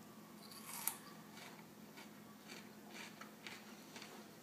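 A crisp crunch as teeth bite into a slice of raw red bell pepper coated in a crust of old Nutella, about a second in, followed by faint crunching chews about twice a second.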